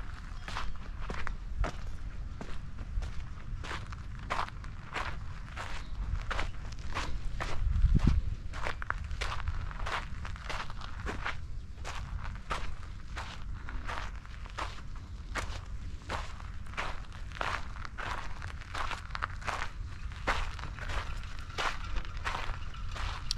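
Footsteps of a person walking steadily on dry, sandy dirt ground, about two steps a second, over a low rumble, with one louder low thud about eight seconds in.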